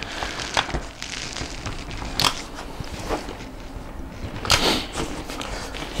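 An UPPAbaby Vista stroller seat being set onto its frame adapters: a couple of sharp plastic clicks, then a brief rustle of handling about four and a half seconds in.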